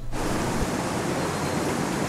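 Tea-processing factory machinery running: a steady, even rush of noise with no distinct rhythm or tone.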